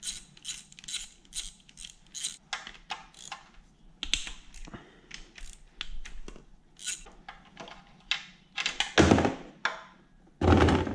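Socket ratchet clicking in uneven short runs as the bolts of an engine's oil filter housing are undone, with small metal taps and knocks. About nine seconds in there is a louder, longer metal clatter as the housing comes off.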